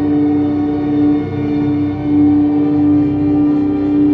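A live band playing a loud, sustained ambient drone: one strong held tone with layered overtones above it, steady and without a beat.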